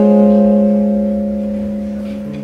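A chord on a hollow-body electric jazz guitar, struck just before and left ringing out, fading slowly.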